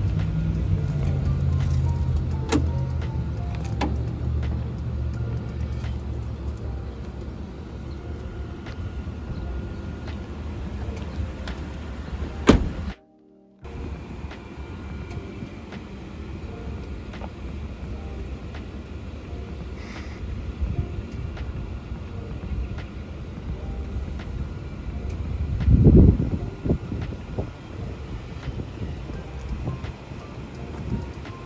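Background music over a pickup truck's engine running as the truck slowly reverses. The sound drops out briefly near the middle, and a brief low rumble comes near the end.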